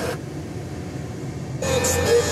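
Pickup truck's factory FM radio being switched between stations: its sound drops away just after the start, and the new station comes in about a second and a half later.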